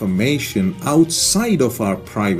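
A man speaking, with music underneath.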